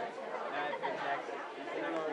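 Indistinct background chatter of several people talking at once in a room full of people.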